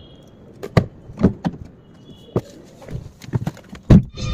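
Footsteps on paving mixed with sharp clicks and knocks around a car door, coming irregularly, with the loudest thump just before the end.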